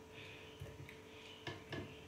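Quiet handling sounds and two short knocks about a second and a half in, as fresh strawberries and grapes are dropped by hand into a plastic blender jar.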